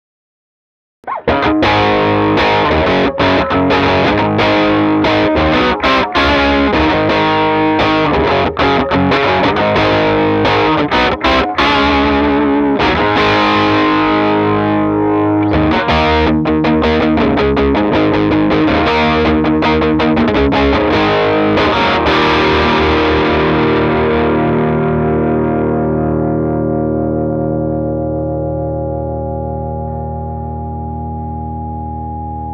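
Les Paul electric guitar played through a SonicTone Royal Crown 30, a cathode-biased four-EL84 British-voiced tube amp, on channel one with the gain at 10, giving a distorted overdrive tone. A busy riff of picked chords and notes starts about a second in, and it ends on a held chord that rings on and slowly fades.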